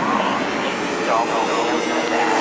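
Breakdown of a dark psytrance track with no kick drum: a hissing synth drone with a processed voice sample over it, and a high sweep rising and falling near the end.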